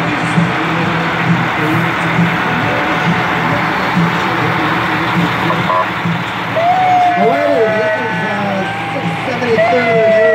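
Diesel engine of a large Oshkosh fire truck running as it rolls slowly past, a steady low rumble over street noise. From about six and a half seconds in, voices with wavering pitch join in.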